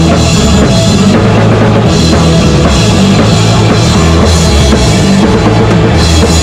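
A punk rock band playing loud and without a break: two electric guitars, an electric bass and a drum kit with bass drum and snare.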